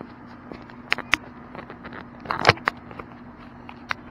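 Camera being handled and repositioned: a few sharp clicks and knocks, the loudest cluster about two and a half seconds in, over a faint steady hum.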